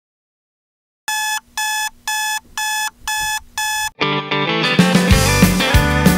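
Digital clock radio's alarm buzzer beeping six times, about two beeps a second, each a short steady electronic tone. About four seconds in the beeping stops and a country band's song starts, with drums joining a second later.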